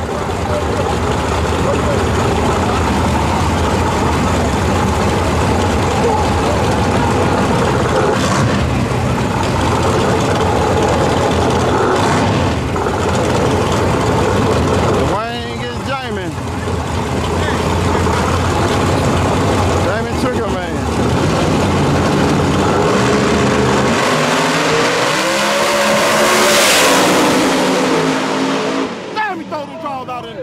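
Two drag-race cars running at the starting line, then launching about three-quarters of the way through and accelerating hard away, engine pitch climbing and the sound fading near the end. Crowd voices throughout.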